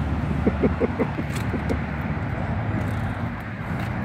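Steady low rumble of nearby city road traffic, with a few faint short sounds in the first two seconds.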